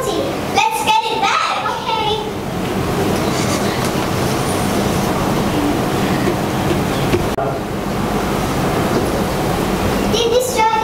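A brief voice in the first two seconds or so, then a steady rushing noise with a faint low hum.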